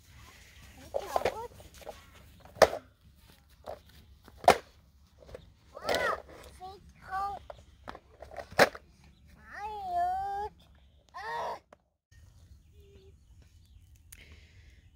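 A toddler's short babbles and high squeals, in separate bursts, with a few sharp clicks or knocks in between.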